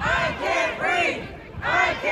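A crowd of marchers shouting a rhythmic chant in unison, in short groups of loud syllables, with a brief break about one and a half seconds in.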